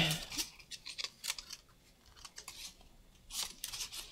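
Soft paper rustles and small clicks as the pages of a little book are leafed through, in short scattered bursts.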